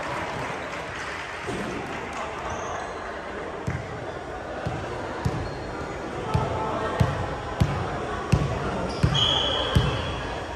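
A volleyball bounced again and again on a hardwood gym floor, starting a few seconds in at about three bounces every two seconds, amid players' voices echoing in the hall. A short, high whistle blast sounds near the end.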